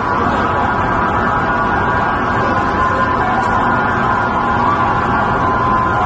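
Steady loud city street noise with faint sirens wailing in the distance.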